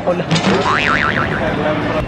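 A springy boing sound, its pitch wobbling up and down about four times in under a second, over background crowd noise.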